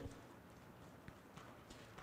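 Near silence: room tone with a few faint clicks.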